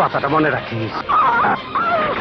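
A man snickering and laughing, mixed with high-pitched vocal cries, over film background music.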